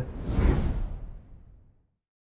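A whoosh sound effect with a low rumble underneath, starting right after the last word and fading away over about a second and a half. It is a video transition effect leading into the end logo.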